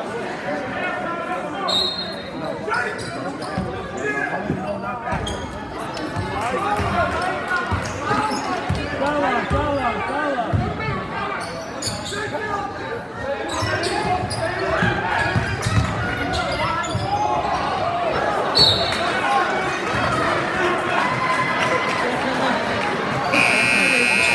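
Basketball game in a school gym: a ball bouncing on the hardwood floor amid spectators' and players' voices echoing in the hall. Near the end a long, loud referee's whistle blows and stops play.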